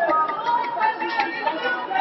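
Several people talking over one another in a large sports hall, with a few short sharp knocks among the voices.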